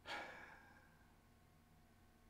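A man's sigh: one breathy exhale that fades over about half a second, then near silence.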